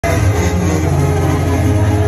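Loud music over an arena concert sound system, with a heavy bass and steady held notes.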